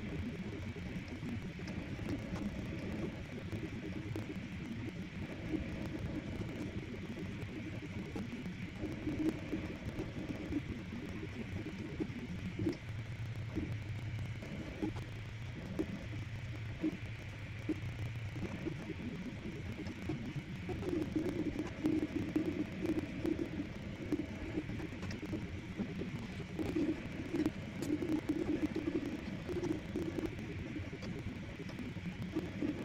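Prusa Mini 3D printer running a print: its stepper motors sing in short, shifting tones as the print head and bed move, over a steady whir.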